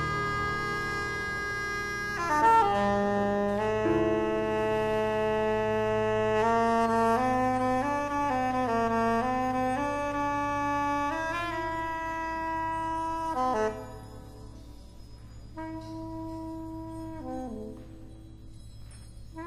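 Soprano saxophone playing long held notes that step up and down in pitch, in a free-jazz improvisation, over a steady low drone. About three-quarters of the way through it drops much quieter, to short, sparse phrases.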